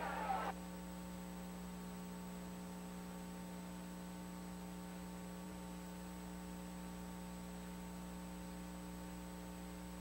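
Steady electrical mains hum with a faint high tone, left after the track sound cuts off about half a second in.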